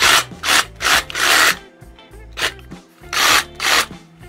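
DeWalt DCS380 20V MAX cordless reciprocating saw triggered in about six short bursts, its blade running free in the air with no cut.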